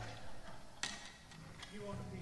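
A quiet lull on stage between songs: faint voices and a few sharp clicks and knocks, the loudest just under a second in.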